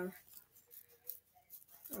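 Faint, irregular light clicks and rustles of a deck of playing cards being spread and handled.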